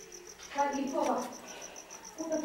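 A cricket chirping in a high, even pulse, about seven chirps a second, running steadily.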